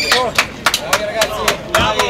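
A few people clapping their hands, about nine sharp, uneven claps, with voices talking over them.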